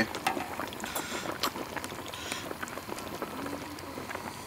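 Broth sloshing and dripping as a long metal ladle scoops a piece of fish out of a large steel wok of soup, with scattered small clinks.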